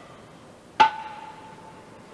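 A single metallic clank about a second in: a dumbbell knocking against the dumbbell rack, ringing for about a second as it dies away.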